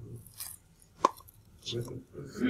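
A single sharp click or knock about a second in, among faint breaths and speech sounds.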